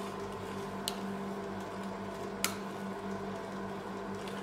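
Metal spatulas spreading ice cream mix on the chilled steel pan of a rolled-ice-cream machine, with two sharp metal clicks as they tap the plate, the louder one past the middle. Under it runs the machine's steady refrigeration hum.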